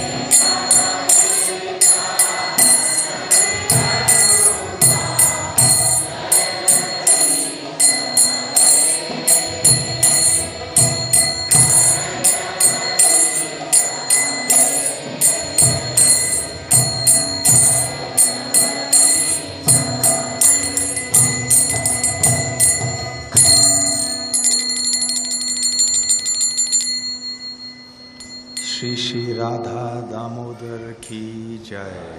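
Small brass hand cymbals (kartals) struck in a steady beat over the instrumental accompaniment of a devotional kirtan, with a melody line and drum underneath. About three-quarters through the cymbals quicken into a rapid roll and then stop, and a man's voice comes in near the end.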